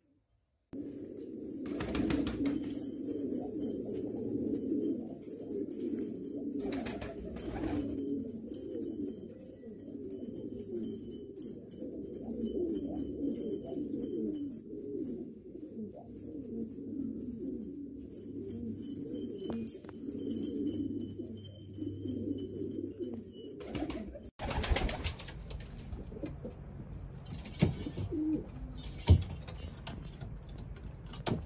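Domestic pigeons of Afghan breeds cooing, several birds overlapping in a steady low cooing chorus. About three-quarters of the way through, the sound changes abruptly to a hissier background with a few sharp knocks, the loudest just before the end.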